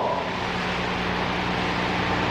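Steady hiss with a low, even hum underneath: the room tone of an old live lecture recording during a pause in speech.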